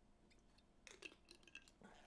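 Near silence, with a few faint clicks and small swallowing sounds about a second in from drinking out of glass bottles.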